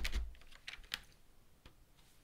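Clear plastic keycap tray being lifted out of its cardboard box, with the PBT keycaps clicking and rattling in their slots. A heavier handling rumble comes in the first half second, then a few scattered light clicks.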